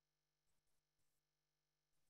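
Near silence: room tone, with a few very faint short ticks.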